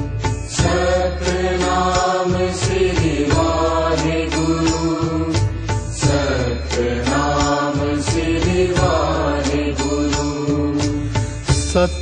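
Sikh kirtan: voices sing a drawn-out devotional melody over harmonium, with regular drum strokes throughout.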